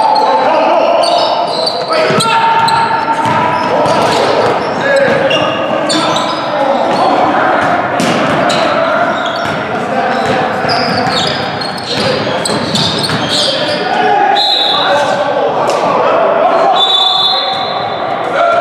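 Basketball being dribbled on a hardwood gym floor during live play, with sharp bounces, running footsteps and short high sneaker squeaks, and players calling out. The sound echoes around a large gym hall.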